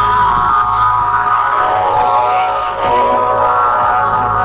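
Music with plucked string instruments from Bangladesh Betar's shortwave broadcast on 9455 kHz, heard through an AM receiver. The sound is thin and cut off above about 5 kHz, with a steady low hum under it.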